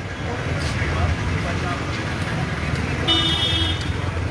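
Street traffic noise with a steady low rumble of vehicles. Near the end a vehicle horn gives one short toot of under a second.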